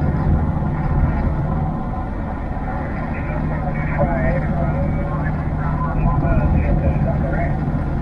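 A distant station's voice coming thin and faint through an HF mobile radio's speaker, over the steady drone of the pickup's engine and road noise in the cab.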